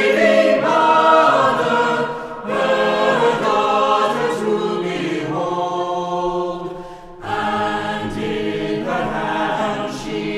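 A small choir singing a hymn-ballad in several voice parts, with a brief breath about two and a half seconds in and a fuller break around seven seconds before the voices come back in together.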